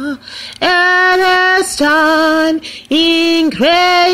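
A woman singing unaccompanied, four held notes with vibrato, separated by short breaths.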